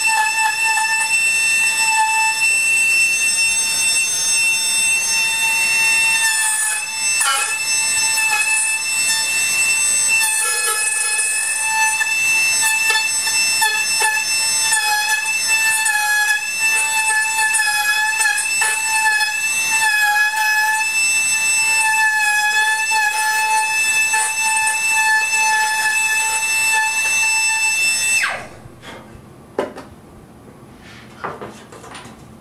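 A small handheld high-speed rotary cutting tool runs with a steady high whine as it cuts wood from the guitar rim to make pockets for the back braces. It shuts off suddenly near the end.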